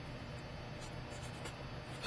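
Black felt-tip marker writing on paper: a word and an arrow being drawn, heard as a string of faint, short scratchy strokes of the tip.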